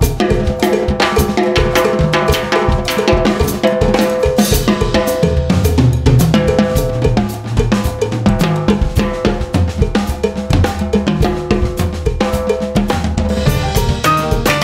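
Several drum kits playing an Afro-Cuban groove together, a fast, busy pattern of drum and cymbal strokes. Low bass notes join in about five seconds in.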